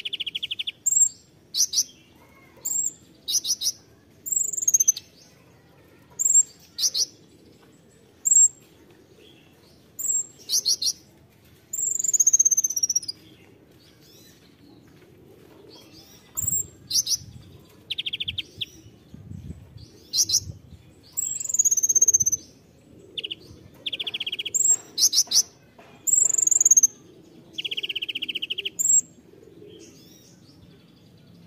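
Male Van Hasselt's sunbird (kolibri ninja) calling in a long series of short bursts: sharp, very high chirps and short downward-sliding whistles, with a few lower buzzy trills mixed in. There is a pause in the calling about halfway through.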